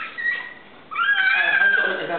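A baby's high-pitched squeal: a short squeak near the start, then one long, wavering call from about a second in.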